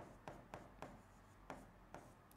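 Faint strokes of a marker pen writing on a board: about half a dozen short, separate scratches as characters are drawn.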